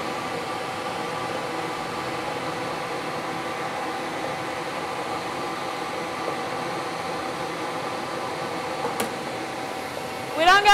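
Air-blown lottery draw machine running, its blower giving a steady whir with a faint hum of a few held tones as it mixes the balls in the clear globe. A single sharp click comes about nine seconds in.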